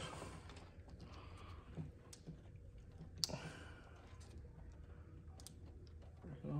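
Quiet handling noise: a few faint clicks and taps as gloved hands press and slide wet window tint film against the door glass, the sharpest click about three seconds in.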